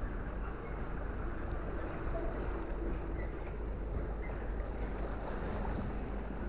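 A steady low engine rumble with a constant background wash of noise and no distinct events.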